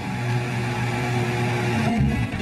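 Heavy metal band playing: a low, distorted guitar and bass note held steady under a dense bright wash. It changes shortly before the end.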